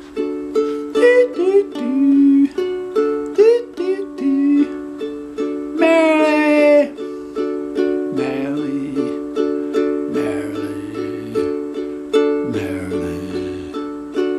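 Deviser concert ukulele with carbon nylon strings, capoed at the second fret for D tuning, strummed in steady repeated chords. A voice joins in with wordless sung notes, the longest and loudest a wavering note about six seconds in.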